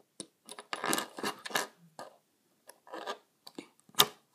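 LEGO minifigure and round pizza piece being handled and pressed into a minifigure's hand close to the microphone: a run of irregular plastic clicks, taps and scrapes.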